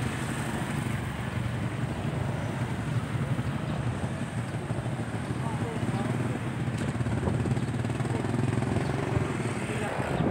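Small engines of motorized three-wheeled tricycles running in the street, a steady low rumble with a fast pulse, with faint voices in the background.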